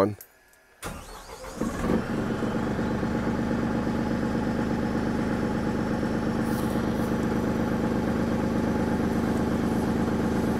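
The 49 hp turbo diesel engine of a Mongoose 184-HD trailer sewer jetter cranks for about a second, catches, and settles into a steady idle. Its high-pressure water pump is left engaged, so the engine is running it.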